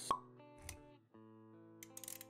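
Animated-intro music with sound effects: a sharp pop just after the start, sustained soft music notes, a low thud about halfway through, and a few quick clicks near the end.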